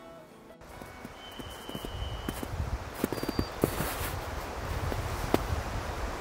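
Wind rumbling on an outdoor microphone, with scattered crackles and rustles of a person moving on a snowy trail. A brief high steady tone sounds about a second and a half in.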